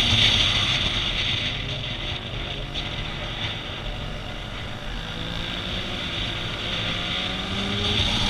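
Motorcycle engine heard from an onboard camera at speed, with wind rushing over the microphone. The engine pitch glides up and down, quieter through the middle and louder again near the end.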